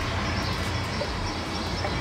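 Steady low rumble of background noise with a faint hiss over it, holding at an even level with no sudden events.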